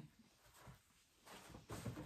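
Mostly near silence, then faint rustling in the last half-second or so as a small canvas with a paint cup upturned on it is set down on a quilted absorbent pad and gloved hands settle on the pad.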